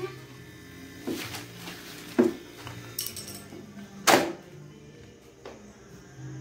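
Handling and walking noise from a phone camera carried through a house: a few sharp knocks and scuffs spread over several seconds, the loudest about four seconds in.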